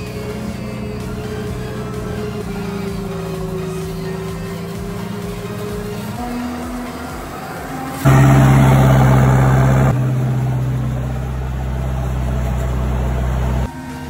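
Background music at first. About eight seconds in, a tractor-drawn forage harvester's maize header and chopper suddenly come in loud and close, running steadily as they take in stalks, then cut off abruptly near the end.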